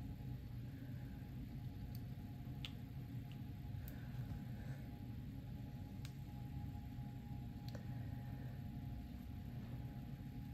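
Scissors snipping open a leathery ball python egg: a few faint, irregularly spaced clicks over a steady low room hum.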